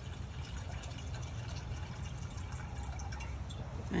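Water being poured from a jug into a bowl: a faint, steady trickle and splash of filling.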